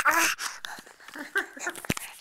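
A baby's short vocal sound, then close wet mouthing and handling noises as she gums and grabs the camera at its microphone, with one sharp knock near the end.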